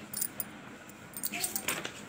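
Soft paper rustle and light, scattered clicks as a page of a picture book is turned by hand.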